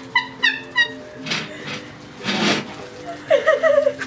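Young women laughing: three short high squeals in the first second, two breathy gasps of laughter, then a rapid stuttering laugh near the end.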